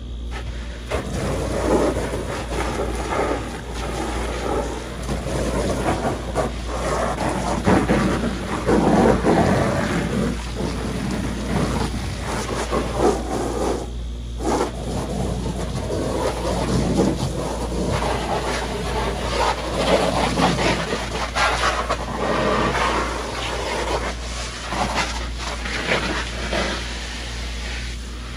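Garden hose spray nozzle jetting water against an inflatable vinyl pool, the spray noise swelling and fading as the jet moves over the plastic, with a short break about halfway through.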